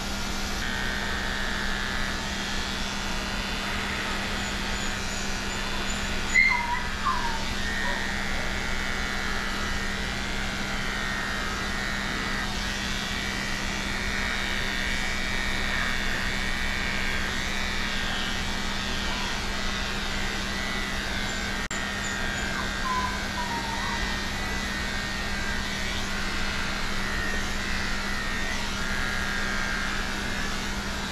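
Electric dog clipper running steadily through the coat, its head fitted with a suction hose, giving a constant hum. A couple of brief squeaks come about six seconds in and again a little past twenty seconds.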